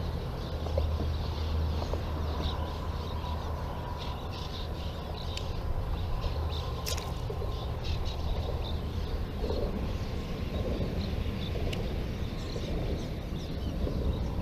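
Barn swallows twittering as they fly overhead: many short, high chirps throughout, over a steady low rumble.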